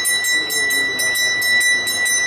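A bell ringing in fast, even strokes, about five a second, over a steady high ringing tone. Faint voices are underneath.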